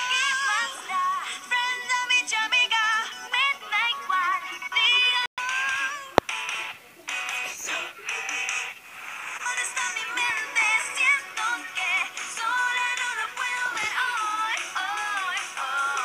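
Pop song sung by a group of girls' voices over a backing track, played from a television and picked up in the room. A brief dropout about five seconds in is followed by a sharp click.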